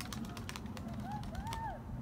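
Quiet outdoor background with a low steady hum; a little past halfway, a distant bird gives three short, faint rising-and-falling calls.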